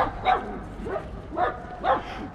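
A dog barking and yipping: about five short barks, roughly half a second apart.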